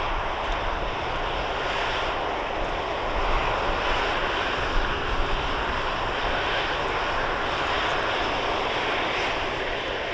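Boeing KC-135 Stratotanker's four CFM56 (F108) turbofan engines running with a steady jet roar as the tanker rolls along the runway.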